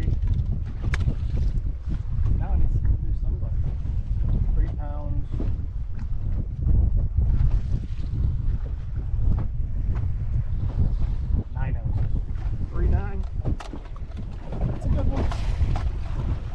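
Wind buffeting the microphone in a steady low rumble, with a few brief muffled voice fragments.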